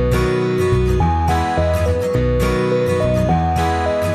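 Instrumental background music with acoustic guitar, a melody of held notes moving over changing chords.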